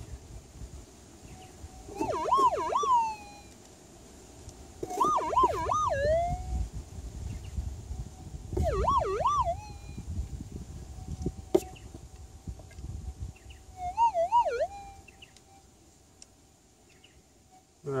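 Minelab GPZ 7000 metal detector's steady threshold tone, broken four times by a warbling target signal whose pitch swings up and down, as a handful of clay soil is passed over the coil; the signal comes from a small gold nugget in the handful. Soft rustle of soil being handled underneath.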